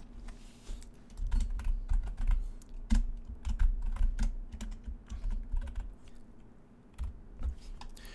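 Typing on a computer keyboard: a quick run of irregular keystrokes that thins out after about five seconds, with one more keystroke near the end.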